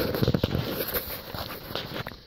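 Rustling and irregular knocks of a phone being handled and turned around, rubbing close against its microphone.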